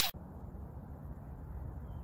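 A whoosh sound effect cuts off right at the start. It is followed by a steady low rumble of outdoor background noise picked up by the camera's microphone.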